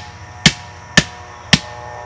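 A hammer striking the top of a rigid PVC fence post, driving it into the ground, in steady sharp blows about two a second.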